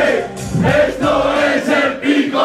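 Live rap performance through a club PA: a programmed hip-hop beat with several voices rapping and chanting together into microphones.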